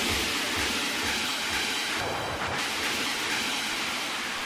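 Dance-music DJ mix in a breakdown: the kick drum and bass drop away and a steady white-noise hiss washes over thin music.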